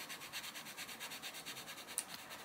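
Castle Arts Gold coloured pencil shading lightly on paper: a quiet, scratchy rubbing in rapid, even back-and-forth strokes, with a small tick at the very end.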